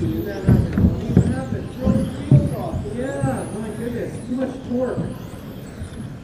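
High-pitched whine of electric RC touring cars' brushless motors, gliding up and down in pitch as the cars accelerate and brake around the track. Voices and several dull thumps in the first couple of seconds sound over it.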